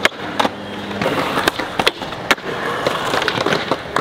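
Skateboard wheels rolling on smooth concrete, with several sharp clacks of the board in the first half, about half a second to a second apart.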